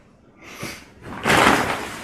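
A grocery shopping bag being set down and handled: a short rustle about half a second in, then a longer, louder rustle through the second half.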